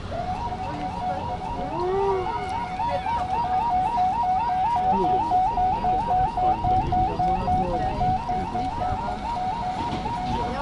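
An electronic warning siren warbling rapidly, about four rising-and-falling cycles a second, starting just after the beginning, over low traffic and wind noise.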